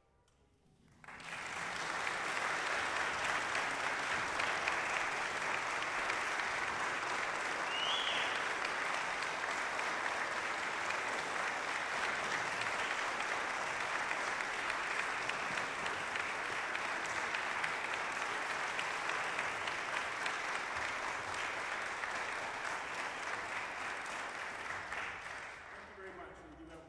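Audience applauding. The clapping starts about a second in, holds steady and fades near the end.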